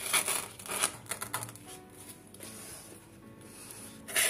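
Rustling and light scraping of leaves and wooden skewers being pushed into a bouquet of soap flowers, in a few short bursts in the first second and a half, over quiet background music.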